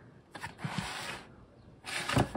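Cardboard retail box rubbing and sliding under the hands as it is lifted and turned, with a couple of low knocks. A louder knock comes near the end as the box is set down.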